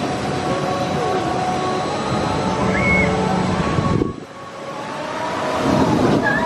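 A roller coaster train running along its steel track, its wheels rumbling on the rails. The sound drops suddenly about four seconds in, then builds again as a train comes close.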